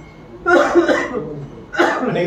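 A person coughing: a loud burst about half a second in, and a second short one near the end.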